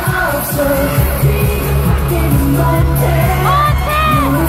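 Live pop music with singing over a concert sound system, with a heavy bass beat.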